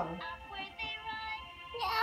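Electronic singing and music from a Little Mermaid Ariel talking-and-singing doll's built-in sound chip, a tune of held synthesized notes.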